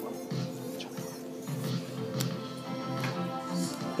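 A song playing back through Mixxx DJ software with the deck's high EQ turned down, cutting the treble so it sounds muddy.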